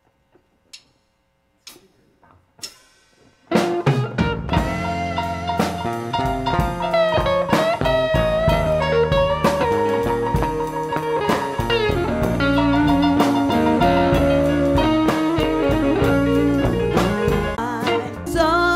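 Electric blues band starting a song's instrumental intro: after a few faint clicks, electric guitar, bass and drum kit come in together about three and a half seconds in, with a lead line of bent notes over a steady groove.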